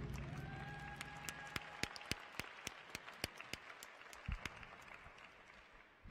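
Sparse applause from a small audience: scattered single hand claps, a few a second, thinning out toward the end as the last of the music fades.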